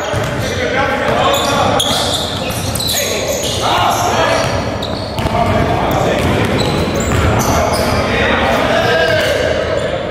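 Basketballs bouncing repeatedly on a hardwood gym floor while players dribble, with players' voices in the background, all carrying the reverberation of a large gym.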